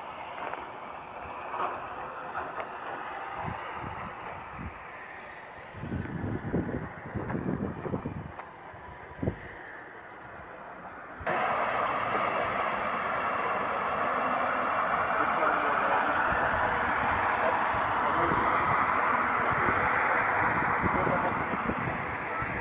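A tracked excavator's diesel engine running at work, heard as a loud, even rushing noise that comes in suddenly about halfway through; before that the sound is quieter, with a few short bursts.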